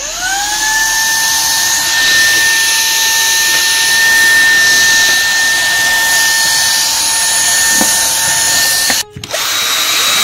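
Handheld cordless vacuum cleaner switching on: its motor whine rises quickly to a steady pitch and runs evenly with a strong rushing hiss as the nozzle sucks up brick dust along the skirting board. About nine seconds in the sound cuts off abruptly.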